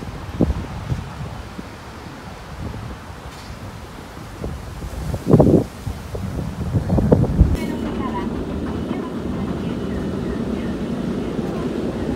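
Strong wind buffeting the microphone in a rough low rumble, with two heavy gusts about five and seven seconds in, then a steadier blowing.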